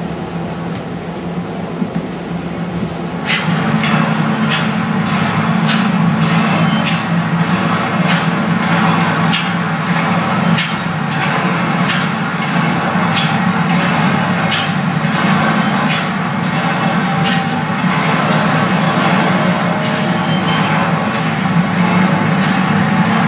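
Soundtrack of a screened video played over a room's speakers. It comes in about three seconds in, over a steady hum, as a music-like track with sharp knocks about once a second.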